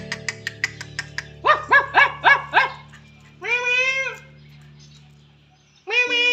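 Music with a ticking beat and held low notes, over which a dog barks five times in quick, even succession about a second and a half in, followed by a longer drawn-out call near the four-second mark and another just at the end.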